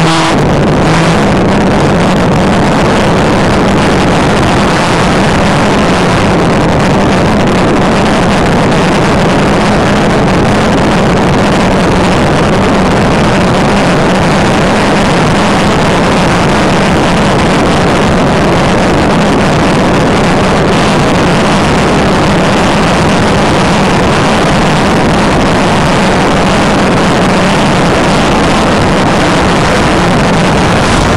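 Police cruiser driving fast on the highway: a steady, loud engine drone with road and wind noise, unbroken throughout.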